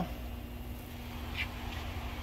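Faint steady low background hum with a faint steady tone, and a brief faint sound about one and a half seconds in; no distinct event.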